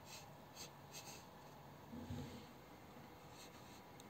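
Near silence: faint rustling and rubbing, with one soft low thump about two seconds in.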